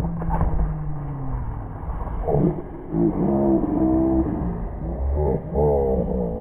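Muffled low outdoor rumble and hiss, with distant voices calling and shouting from about two seconds in.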